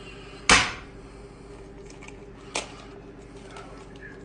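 An egg cracked against the rim of a nonstick frying pan: one sharp knock about half a second in, then a smaller click a couple of seconds later as the shell is broken open.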